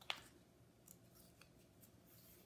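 Paper page of a picture book being handled and turned: one short, crisp paper sound just after the start, then a few faint ticks over near silence.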